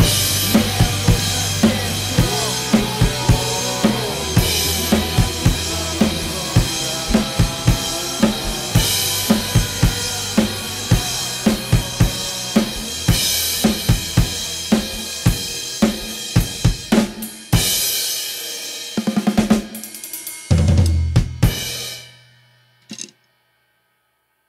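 Rock drum kit played along with the band's recorded song: steady kick and snare strokes with cymbals over guitar and bass. Near the end the song closes on a few heavy accented hits and a last crash that rings out and dies away to silence.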